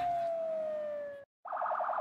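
Police escort car's siren: a long wail sliding slowly down in pitch, cut off a little over halfway through, then after a brief gap a fast warbling siren tone pulsing about a dozen times a second.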